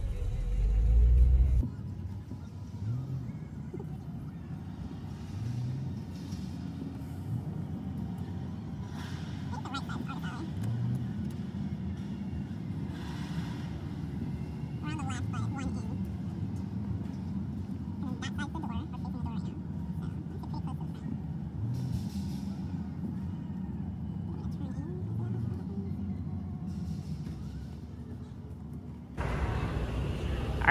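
Low, steady rumble of a car's cabin as the car rolls slowly, heavier for the first second and a half, with faint indistinct voices now and then.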